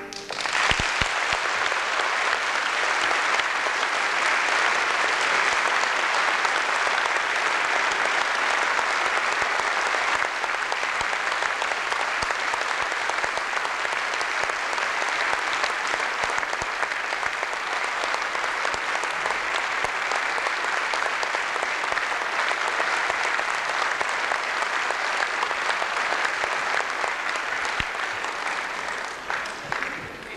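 Concert audience applauding, starting as the wind band's last chord cuts off and going on steadily, thinning out near the end.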